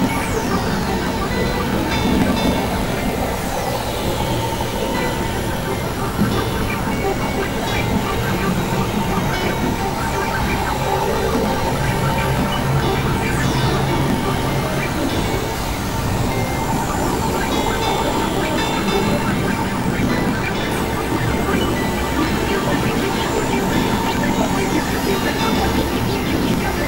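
Experimental electronic noise music from synthesizers: a dense, steady wash of noise and drones with a held tone, crossed now and then by high sweeps that fall in pitch.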